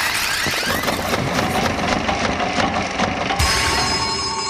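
Cartoon machine sound effects for a toy story-making machine: a dense clattering, ratcheting noise full of rapid clicks and rising whistles as its patterned roller turns. About three and a half seconds in, it gives way to several steady ringing tones.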